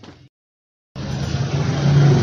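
A loud, steady engine-like running noise with a low hum, cutting in suddenly about a second in after a moment of dead silence.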